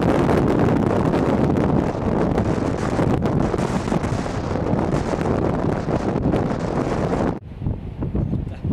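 Strong wind buffeting the camcorder's microphone: a loud, dense, steady rush with no distinct tones. About seven seconds in it cuts off suddenly and a quieter, gustier wind noise follows.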